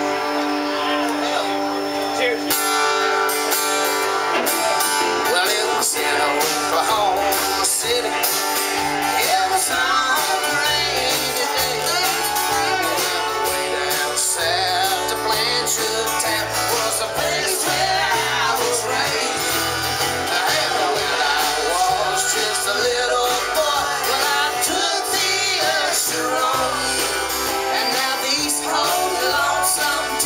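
Live band playing an Americana song: strummed acoustic guitar, electric guitar and a drum kit, with a man singing lead at the microphone.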